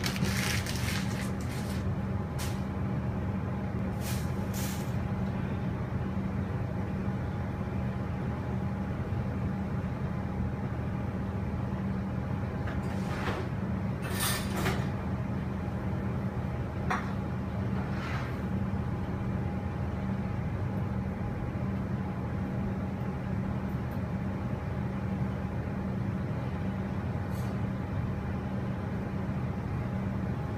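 Steady low hum and hiss from a stovetop heating a pot of water under a stainless steel bowl, with a few faint ticks about halfway through.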